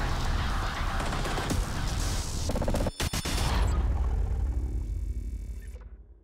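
Cinematic title-intro sound effects: a dense barrage of crashing impacts over a deep rumble. There is a brief break about three seconds in, and it fades out near the end.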